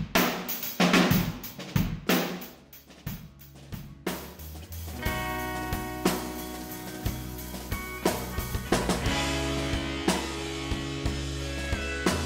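A rock drum kit played with sticks: hard snare and bass drum hits with cymbals, sparse at first, then from about five seconds in a band with electric guitar and bass guitar plays along as a full song.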